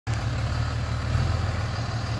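Tow truck engine idling steadily, a low even hum.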